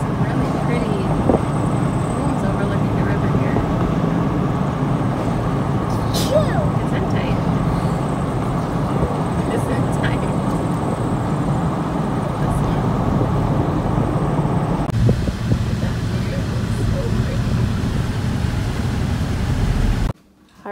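Road and wind noise of a moving car heard from inside the cabin: a steady, loud rushing, which turns duller about fifteen seconds in.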